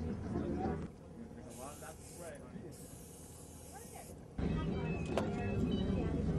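Faint, indistinct voices. About a second in they drop away, leaving a quieter stretch with two short bursts of hiss, and they come back suddenly past the middle, with a single click.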